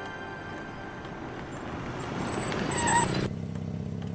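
A cartoon car's engine drawing near, growing steadily louder. It ends in a high squeal as the car pulls up and cuts off about three seconds in.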